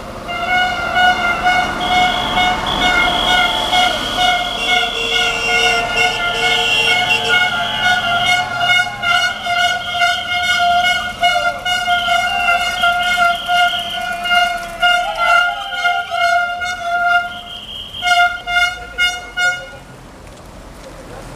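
Vehicle horn held in one long continuous blast, then sounded in a quick series of short toots near the end.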